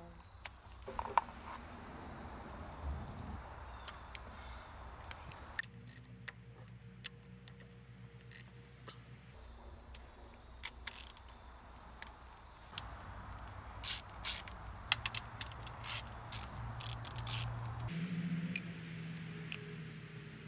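Hand ratchet and socket working the 10 mm valve-cover bolts off a Honda K24 engine: irregular metallic clicks and clinks, thickest in the second half, over a steady low hum.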